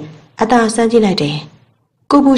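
A woman's voice narrating: one short spoken phrase about half a second in, then a pause.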